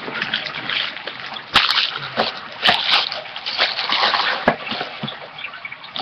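Trading-card pack wrappers being crumpled and handled close to the microphone: an irregular crinkling rustle with a few sharp crackles.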